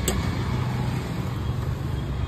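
Steady low rumble of street background noise, with traffic-like hum and no distinct single event standing out.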